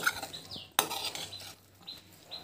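Steel spoon stirring a sprouted moong bean salad in a metal kadhai, scraping along the pan and clinking against its side, with two sharp clinks: one right at the start and one just under a second in.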